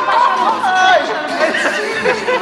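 Excited chatter of a group: several voices talking and calling out over one another.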